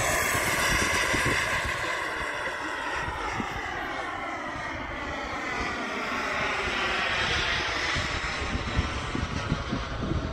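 Radio-controlled BAE Hawk model jet flying past and away overhead, its engine giving a high, steady whine that slowly slides down in pitch. Wind rumbles and buffets on the microphone underneath, gustier near the end.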